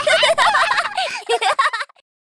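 Young children laughing and giggling together in quick warbling peals, cut off suddenly near the end.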